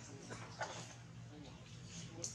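Faint dog whimpering: a few short, high cries that bend in pitch.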